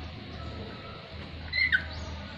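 A lorikeet giving one short, shrill call about one and a half seconds in, dropping in pitch at its end.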